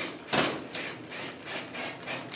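Rubbing and scraping of metal as a self-tapping screw is worked into sheet-metal stove flue pipe, with a sharp knock about a third of a second in.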